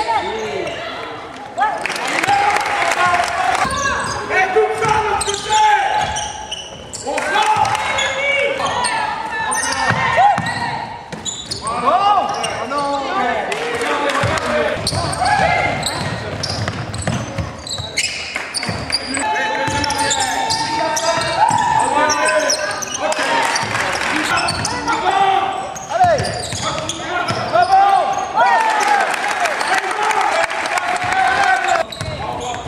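Basketball bouncing on a hardwood gym court during live play, with players' voices calling out over it.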